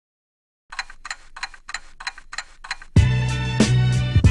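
Clock ticking, about three ticks a second, as the intro of a hip-hop track. About three seconds in, a beat with deep bass and drums drops in.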